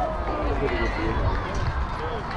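Spectators shouting and cheering just after a hit, several voices rising and falling, over a steady low rumble.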